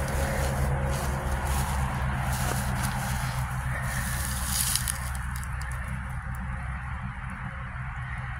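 Dry grass stems rustling and crackling as a hand pushes them aside from a gravestone, most strongly about halfway through, over a steady low background hum and rumble.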